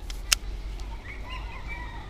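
A single sharp click from the baitcasting reel about a third of a second in, then a bird's faint, wavering call over the second half.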